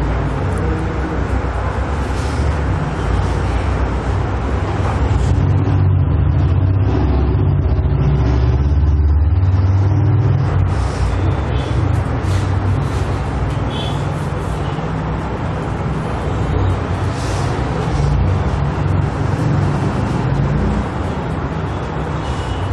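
Steady low rumble with a hum, swelling a little a few seconds in, with a few faint clicks over it.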